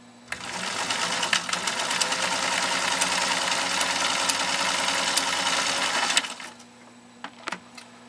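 1949 Pfaff 332-6 sewing machine running at full speed through ten layers of heavy denim, its rapid stitching steady and unslowed by the thickness. It starts just after the beginning, comes up to speed within about half a second, stops suddenly about six seconds in, and is followed by a few light clicks.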